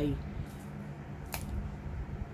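A pause in talk with a steady low hum, broken by a single sharp click about a second and a half in.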